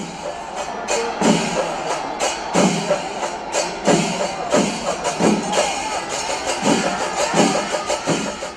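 Kerala temple percussion ensemble playing: repeated loud stick-drum strokes, about one to two a second, over a dense festival din with wavering higher tones.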